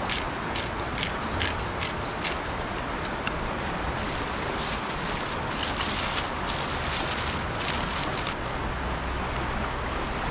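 A pepper grinder twisted over foil-wrapped potatoes, making a run of sharp grinding clicks over the first few seconds. Then aluminium foil crinkles as it is folded into a packet, over a steady rushing background noise.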